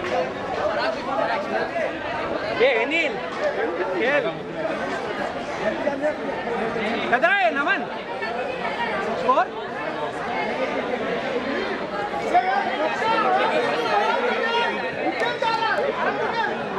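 Several people talking over one another in indistinct chatter, with one voice calling out louder about seven seconds in.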